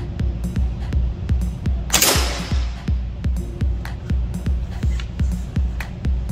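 Background music with a steady beat. About two seconds in, an air rifle fires once: a sharp crack with a short ringing tail as the pellet strikes the pellet trap.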